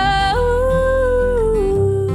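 Female pop vocal holding two long sung notes, the second gliding down near the end, over acoustic guitar accompaniment in a slow ballad.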